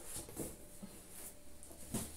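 Faint rustling and a few light knocks of a sneaker and cardboard shoeboxes being handled, the sharpest knock near the end.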